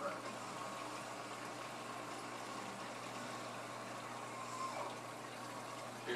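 Steady bubbling and running water of an aquarium, with a constant low hum underneath.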